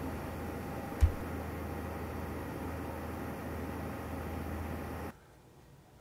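Steady low machine hum with faint hiss, broken by a single sharp thump about a second in. It cuts to near silence shortly before the end.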